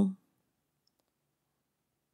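A woman's voice finishing a word right at the start, then near silence with one faint, tiny click about a second in.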